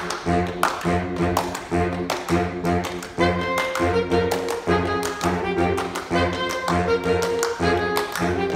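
Saxophone ensemble playing. A bass saxophone repeats short low notes in an even pulse about twice a second, with sharp taps in between. Higher saxophones come in with held notes about three seconds in.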